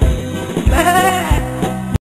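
Instrumental nursery-rhyme backing music, with a lamb's bleat over it once, about a second in. The sound cuts off suddenly just before the end.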